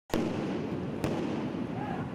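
Two sharp blasts about a second apart, set off in the street during a riot, over the loud, steady noise of the crowd.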